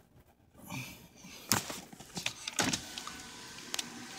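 Faint car cabin noise with a few sharp knocks and rubbing as a handheld phone is moved about; the strongest knocks come about a second and a half in and again after two and a half seconds.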